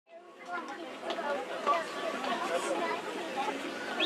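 Several people talking at once in indistinct chatter, with no single clear voice, starting just after the clip begins.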